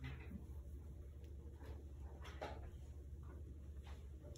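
Quiet classroom room tone: a steady low hum, with a few faint brief knocks and rustles from desks and paper a little after the middle.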